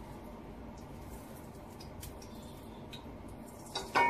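Quiet kitchen background: a low steady hiss with a few faint, light clicks of a utensil against a cooking pan.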